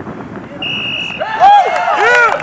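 A referee's whistle blows once, a steady high note lasting about half a second, then players break into loud shouting.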